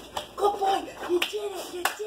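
A woman's wordless vocal sounds, with two sharp clicks, one a little past halfway and one near the end.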